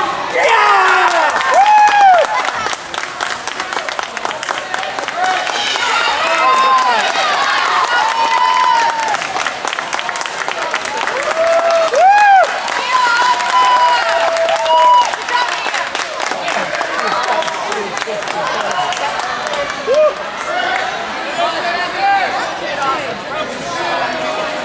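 Spectator crowd cheering and shouting over overlapping chatter, loudest about two seconds in and again about twelve seconds in.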